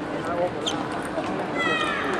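Table tennis ball clicking off bat and table in a rally, a sharp tick with a brief high ring about two-thirds of a second in. Near the end a high, falling cry of a voice rises over the hall's chatter.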